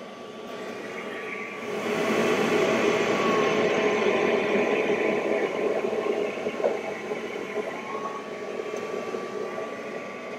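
Air-assist and exhaust fans running on a diode laser engraver while it cuts EVA foam: a steady rushing noise that swells about two seconds in and eases off after about six seconds, over a steady whine.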